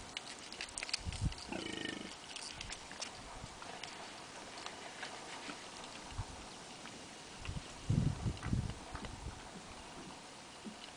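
Warthogs at a waterhole: scattered sharp clicks like hooves on rock, a short pitched call about one and a half seconds in, and a cluster of low grunts about eight seconds in, the loudest sound.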